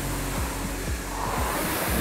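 Concept2 rowing machine's air flywheel whooshing as it is driven through a stroke at full pressure, the rush of air building towards the finish of the drive.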